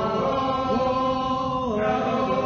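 A church congregation singing a hymn a cappella, many voices together holding long notes that step in pitch about every second.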